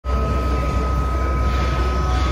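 Steady machine noise: a low rumble with a constant high whine on top, running unchanged throughout.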